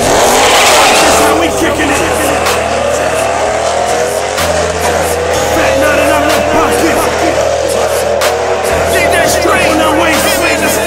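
A drag-racing car's engine revving and its tyres squealing through a smoky burnout, then the car running down the strip. Hip-hop music with a steady bass line plays loudly over it throughout.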